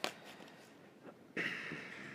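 Oracle cards being shuffled and drawn: a sharp tap of cards at the start, then, about a second and a half in, a papery rustle as a card slides off the deck, fading slowly.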